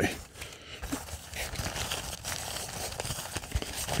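Crinkling rustle of a folded fabric pop-up windshield sunshade being handled as its strap is wound around the bundle, with a few light ticks.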